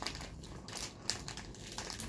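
A snack cake's wrapper crinkling in a quick series of short crackles as it is handled and opened.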